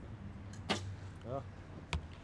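A recurve bow shot: the string is released with a sharp snap, and just over a second later the arrow hits the target with a louder sharp smack near the end.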